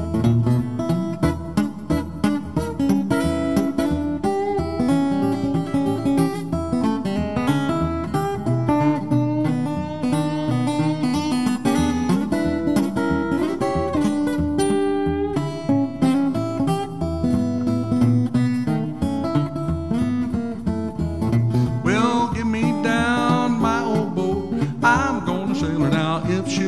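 Solo steel-string acoustic guitar playing an instrumental break: a picked melody over steady bass notes, in an even, bouncy rhythm.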